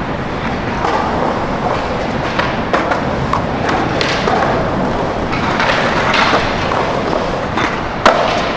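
Skateboard wheels rolling on polished concrete in a skate bowl, a steady rumble broken by several sharp knocks of the board.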